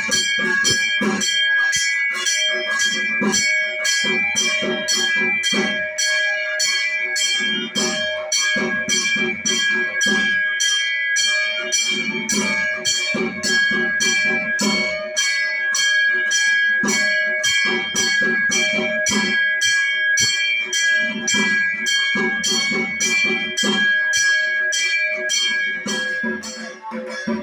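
A ritual bell rings in a steady rhythm of about two strikes a second, its ringing tones held throughout. Beneath it runs music with a lower part that comes and goes in phrases.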